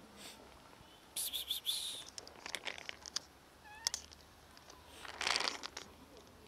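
Domestic cat giving a short, rising meow just before four seconds in, with two louder bursts of noise, one about a second in and one a little after five seconds.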